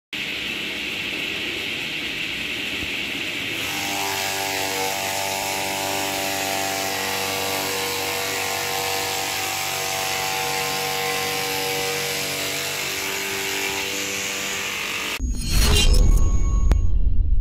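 TAKYO TK 15 chopper's electric motor running steadily while its blade shreds a banana trunk, a continuous whirring, hissing noise with a steady hum. About fifteen seconds in, a much louder, bass-heavy logo jingle cuts in.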